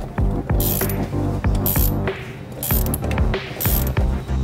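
Ratchet wrench clicking in short runs as it turns the top nut of a car's rear shock absorber, over steady background music.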